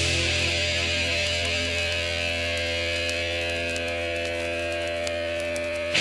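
Heavy metal music: a distorted guitar chord and low bass note held and ringing out over a cymbal wash, slowly fading, with no drum hits.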